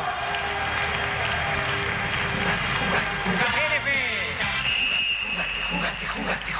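Audience applauding and cheering over music, with shouting voices; a long, high, steady note is held near the end.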